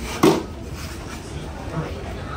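A single sharp clatter of hard objects about a quarter of a second in, over the steady hum and faint voices of a crowded security hall.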